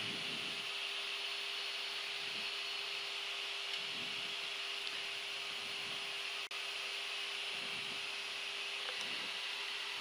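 Steady cockpit noise of a Gulfstream G-IV jet in flight on approach: an even rushing hiss of air with a faint steady hum underneath, dropping out for an instant once past the middle.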